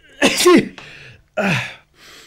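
A person sneezing, a loud 'hatschi' with a falling voice, then a second, shorter burst about a second and a half in.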